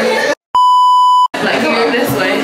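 A censor bleep: a single steady, pure electronic tone at about 1 kHz, lasting under a second, cut in over a muted stretch of speech. It starts and stops abruptly, with a short dead-silent gap just before it.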